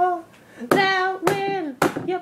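A voice singing long held notes that slide between pitches, with a sharp hand clap or slap about every half second.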